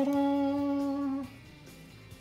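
A single hummed note held at one steady pitch for just over a second, then it stops.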